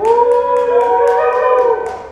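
Loud held cheers or whoops from a few people, over steady hand clapping, as a graduate crosses the stage. The cheers break off a little before the end.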